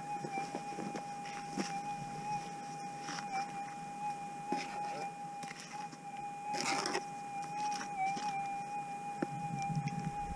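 Gold prospecting metal detector humming its steady threshold tone, with a slight waver now and then. A few short scrapes of a hand tool digging in gravelly dirt sound over it, the strongest about two-thirds of the way through.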